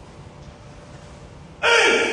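A karateka's kiai during kata: a sudden, loud, pitched shout about one and a half seconds in, after a quieter stretch.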